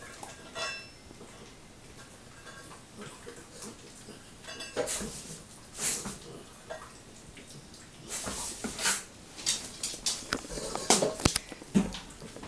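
A dog eating from a metal food bowl: the bowl clinks and scrapes in scattered clicks, sparse at first and busier in the last few seconds.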